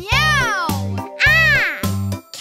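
A cartoon child's voice calling "Meow!" twice in imitation of a cat, each call rising then falling in pitch, over children's song music with a pulsing bass line.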